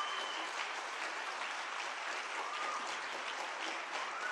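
Audience applauding steadily, breaking in mid-sentence in approval of the speaker's point.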